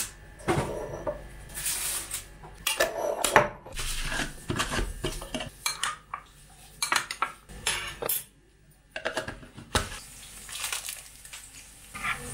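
Metal spoon clinking and scraping against jars and bowls as jam and then olives are spooned out, an irregular run of clinks and taps with a brief lull partway through.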